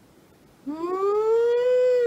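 A woman's long closed-mouth "mmm" of relish while chewing a sweet bean. It starts just over half a second in, rises in pitch and then holds.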